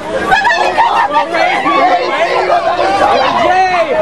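Several people's voices talking loudly over one another, a jumble of chatter with no single clear speaker.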